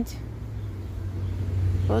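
Low rumble of a motor vehicle in the distance, growing gradually louder.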